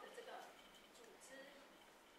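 Near silence: a short pause in a woman's lecture, with faint trailing speech in the first half second.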